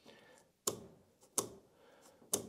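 Two sharp metallic clicks, about three-quarters of a second apart, as the saw chain on a Hyundai HYC40LI cordless chainsaw's bar is pulled out of the groove by hand and snaps back into it. This is the chain-tension test, and it shows the tension is now close to right.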